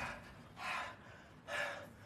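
A man breathing hard: two heavy, breathy gasps about a second apart.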